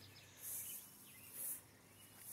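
Faint outdoor background with two short, soft high hisses, about half a second and a second and a half in.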